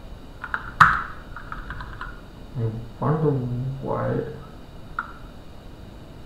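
A few computer keyboard keystrokes, the sharpest about a second in, with one more click near the end. About halfway through, a man's voice murmurs briefly without clear words.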